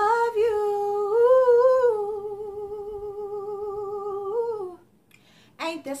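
A woman's voice singing a cappella, holding one long note with a light vibrato that lifts a little in pitch about a second in, settles back and then dies away. After a short pause she starts a new sung line just before the end.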